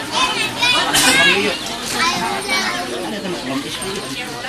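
High-pitched children's voices chattering and calling out over general crowd talk, loudest about a second in.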